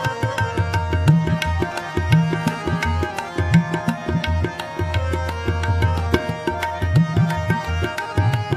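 Kirtan music: harmonium holding a steady melody and chords over a busy tabla rhythm, with the bass drum's deep low strokes swelling and fading under the sharp right-hand strokes.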